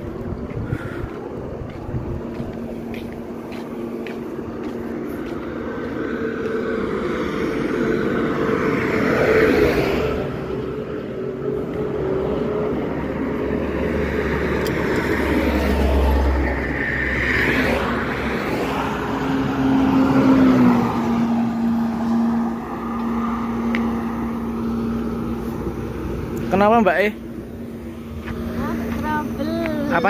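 Motor vehicles on a highway: a steady engine hum with swells as traffic passes, and indistinct voices.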